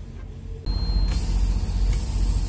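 Semi truck's diesel engine idling, heard inside the cab: a loud, steady low rumble that comes in suddenly about half a second in. For about half a second a thin high tone sounds over it, and then a steady hiss.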